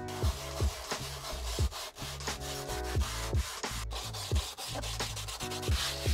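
Hand sanding of a dry, cured microcement base coat with 40-grit sandpaper on a round hand pad: a continuous scratchy rubbing of abrasive over cement, knocking down texture and bumps before the next coat.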